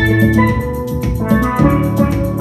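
Steelpan melody played with sticks on a pair of steel pans, over a backing track with drums and bass.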